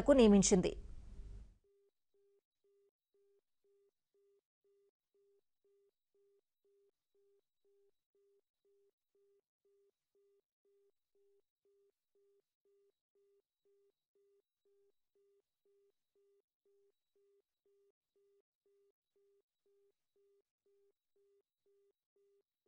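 A voice for the first second or so, then near silence, with only a very faint, evenly pulsing low tone left.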